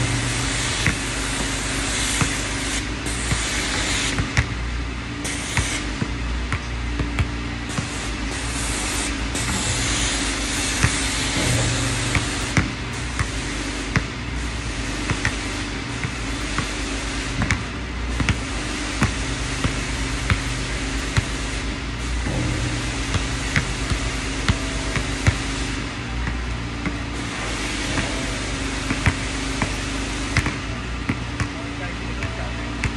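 A basketball bouncing on an outdoor hard court and striking the hoop: scattered sharp thuds every second or two, over a steady low hum and wind noise.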